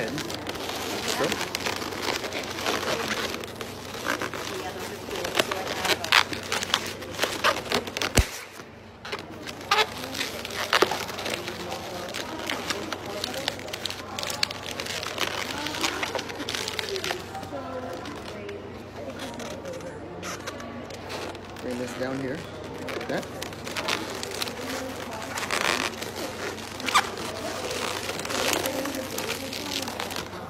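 Latex modelling balloons squeaking and creaking as they are twisted and rubbed together by hand, with many short sharp squeaks throughout.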